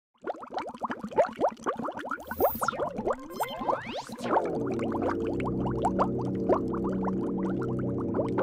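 Channel intro sting made of electronic sound effects: a rapid run of short chirping blips and a sweep that rises steeply about four seconds in, then a held synth chord with the blips carrying on over it.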